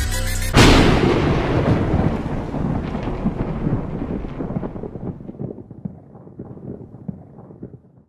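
A hip hop music beat is cut off about half a second in by a loud thunder-like boom. The boom then rumbles and crackles, dying away over several seconds.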